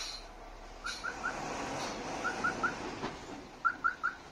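A bus's electronic reversing alarm chirping in sets of three short rising chirps, about one set every second and a half: the bus is backing up to turn.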